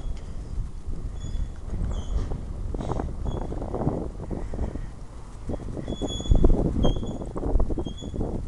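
Footsteps and handling knocks from walking on pavement with a handheld camera, over a low rumble of wind on the microphone, with a few brief faint high chirps. The knocks come thickest for a couple of seconds past the middle.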